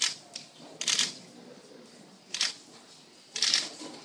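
A horse's hooves clattering and scraping on a hard church floor: four sharp, uneven knocks in about four seconds.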